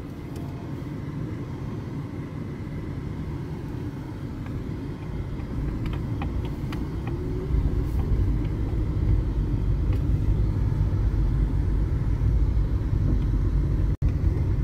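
Car road noise heard from inside the cabin on a rough unpaved dirt road: a steady low rumble of tyres, suspension and engine. It grows louder and deeper about halfway through, with a few light clicks around the middle.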